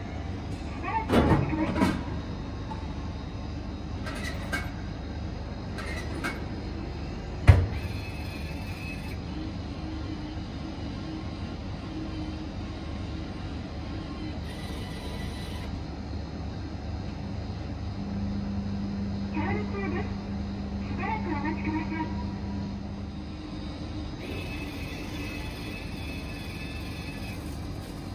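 Hot-food vending machine humming steadily while it heats a packaged meal during its cooking countdown, with faint voices and a single sharp knock about seven seconds in.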